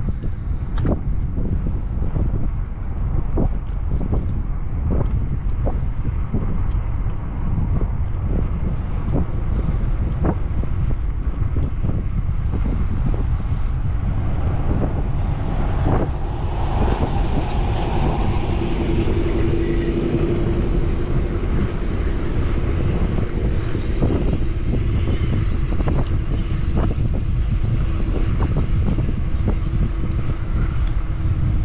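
Wind rumbling on the microphone of a camera on a moving bicycle, steady and low, with scattered light clicks. From a little past halfway a steady engine hum joins and carries on to the end.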